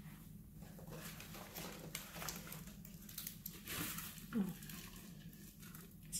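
Soft rustling, scraping and crackling as a calathea is worked loose and lifted out of its pot, leaves brushing and potting soil crumbling, over a low steady hum. A short rising squeak comes a little past four seconds in.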